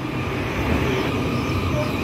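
Taiwan Railways EMU800-series electric commuter train pulling out of the station and rolling past close by at low speed, a steady low rumble of wheels and running gear.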